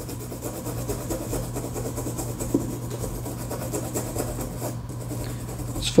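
A toothbrush scrubbing the contact pads of a key fob's circuit board: a fast, steady rasping rub of bristles on the board, over a low steady hum.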